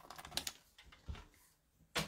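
Paper trimmer cutting a strip of cardstock: a quick run of small, faint clicks, then a few more about a second in.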